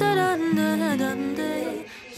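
Background pop song: a soft sung vocal holding and sliding between notes over light accompaniment and a steady low note, fading down near the end.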